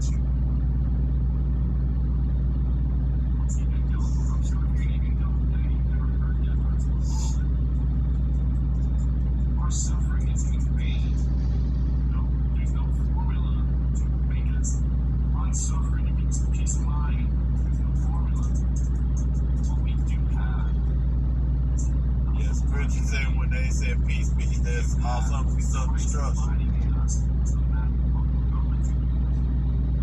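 A steady, unchanging low hum dominates throughout, with faint, indistinct speech and scattered light clicks above it.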